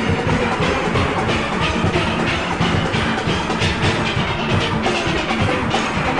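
A steel orchestra playing: many steelpans ringing out a melody and chords over a steady, driving percussion beat.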